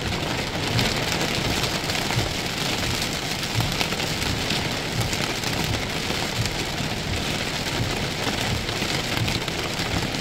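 Heavy rain falling on a car's roof and windshield, heard from inside the cabin as a dense, steady patter of countless drops.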